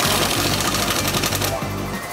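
Cordless impact wrench with a 19 mm socket hammering on a front-suspension bolt for about a second and a half, then stopping. It is running the bolt down tight before the final torque.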